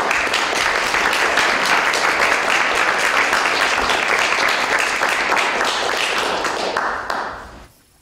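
Audience applauding steadily, a dense patter of many hands clapping that dies away near the end.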